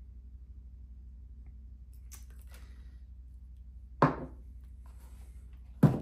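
Handling noise on a wooden coffee table: a faint rustle about two seconds in, then two sharp knocks, about four seconds in and just before the end, as a battery and a small model are set down and picked up. A steady low hum lies under it all.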